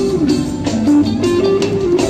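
Live band music led by an electric guitar playing a melodic line of held, stepping notes over a steady beat.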